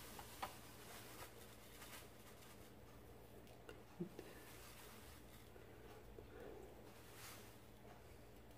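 Near silence with a few faint light taps and clicks, one just after the start and another about four seconds in: a metal spoon scooping breadcrumbs from a cardboard box into a plastic mixing bowl.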